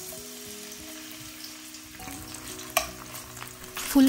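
Diced potato sizzling in hot oil in a stainless steel wok, the hiss starting suddenly as the pieces hit the oil and holding steady while they are stirred with a spatula. One sharp tap comes about three seconds in.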